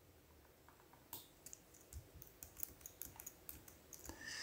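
Faint computer keyboard keystrokes: irregular clicks that start about a second in and go on at an uneven pace.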